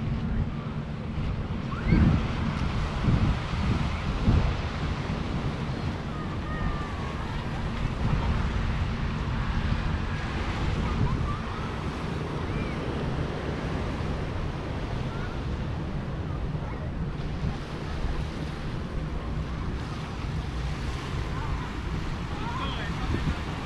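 Sea waves washing onto the rocky shore and beach below, heard as a steady rushing, with wind buffeting the microphone in low rumbling gusts that are loudest a couple of seconds in.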